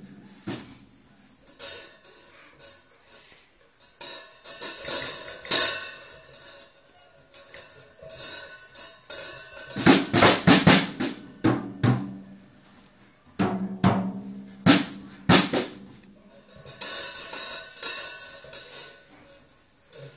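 Acoustic drum kit struck unevenly by a baby: scattered drum hits and cymbal crashes come in uneven bursts, with quieter pauses of a second or two between them.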